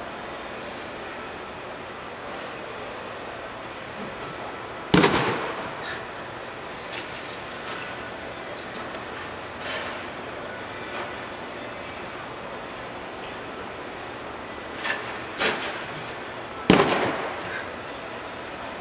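Two sharp pops of pitched baseballs striking home, about twelve seconds apart, each ringing on in an echoing indoor hall, with a couple of lighter knocks shortly before the second one.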